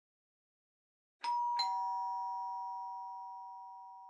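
Two-tone doorbell chime, 'ding-dong': a higher note then a lower one a third of a second later, both ringing on and slowly fading.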